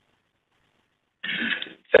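A man clears his throat once, a little over a second in, heard through a telephone conference line.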